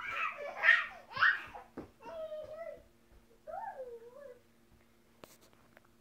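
A baby squealing and laughing, then babbling in two shorter high-pitched calls; a single sharp click about five seconds in.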